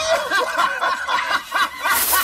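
Human laughter, a run of short chuckles with the pitch wavering up and down.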